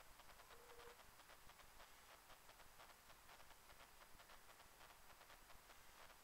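Near silence: faint steady hiss, with a brief faint hum about half a second in.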